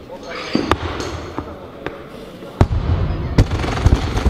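Loaded barbell with bumper plates dropped onto a lifting platform: a heavy thud about two and a half seconds in, then another as it bounces, with lighter sharp clanks of bars around it. Background voices run underneath.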